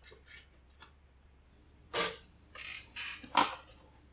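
A pop-up toaster being loaded with a hot dog and a sausage patty: a few faint clicks, then about halfway through a series of short squeaky scrapes and clunks as the food is pushed into the slots and the toaster is worked, the loudest clunk near the end.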